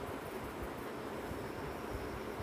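Steady background noise, an even hiss with no distinct events: room tone.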